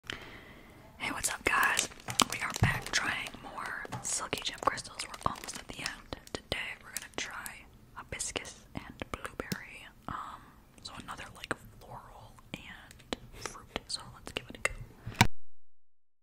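Close-up whispering into a microphone, with crinkling and crackling from a clear plastic zip bag handled in front of it. The sound cuts off abruptly near the end.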